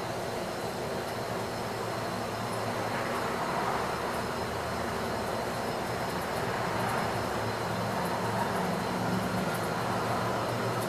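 Steady outdoor background noise: an even rumble and hiss with a faint low hum, with no distinct event in it.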